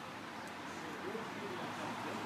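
Faint outdoor street background: a steady low hum of ambient noise with faint, indistinct voices in the distance.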